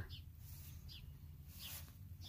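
Faint bird chirps, a few short falling calls, over a low steady background rumble.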